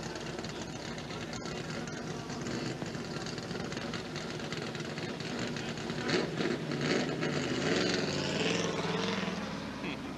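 NASCAR stock car V8 engine running through a pit stop, getting louder and revving from about six seconds in as the car starts to pull away, over a steady din of engines.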